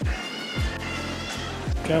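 A child crying in the background, a high wavering wail for about the first second and a half, over background music with a bass beat.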